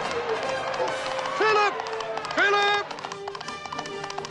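Orchestral film score with a voice holding two short pitched notes over it, each sliding up into the note, about one and a half and two and a half seconds in.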